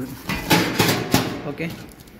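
Stainless steel bain-marie pans being handled through their plastic stretch-film wrap: a burst of crinkling and scraping with a few sharp clicks in the first half, dying away toward the end.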